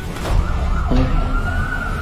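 Film-trailer sound mix: a long wailing tone that slowly rises, siren-like, over a heavy low rumble, with a couple of sudden hits, as a man shouts "No!" at the start.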